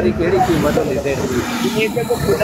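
Speech: a voice talking on, over a steady hiss.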